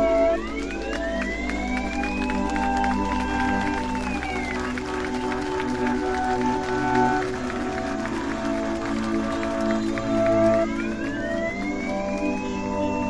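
Ambient electronic background music: held chords with slow sweeping tones that glide up and then down.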